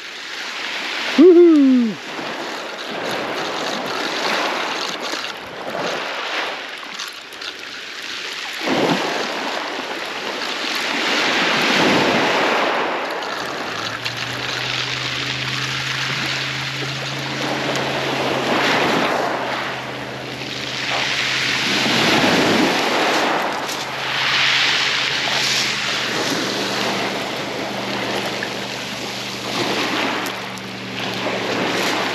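Small waves breaking and washing over a shingle beach, the rush swelling and fading every few seconds. About halfway through a steady low hum starts and runs on underneath.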